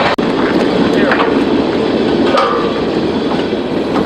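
Freight train of hopper cars rolling past on the tracks: a loud, steady rumble and rattle, with a very brief dropout just after the start.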